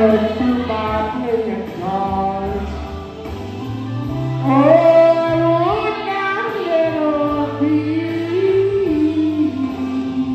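Karaoke singing: one voice sings a melody of long held notes that step up and down over a backing track with a steady bass line.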